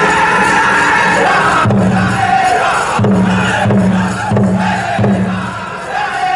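A northern-style powwow drum group singing a prairie chicken dance song over a big bass drum, with crowd noise and shouts. From about two seconds in, the drum strikes heavy, evenly spaced beats, about three every two seconds.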